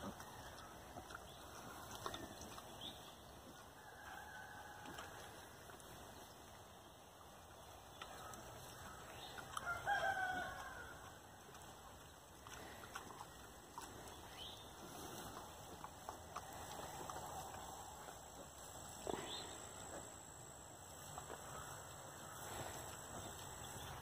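Faint farmyard sounds, with a single pitched animal call about ten seconds in and a few soft, short sounds around it.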